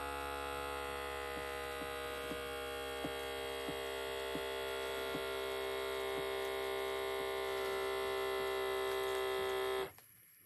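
Automatic blood pressure monitor's electric air pump running steadily as it inflates the arm cuff, with faint ticks roughly every half second and a slow rise in loudness as the pressure builds. The pump cuts off suddenly near the end as the cuff reaches pressure and the measurement begins.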